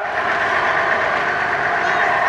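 Military vehicle's multi-fuel engine running steadily.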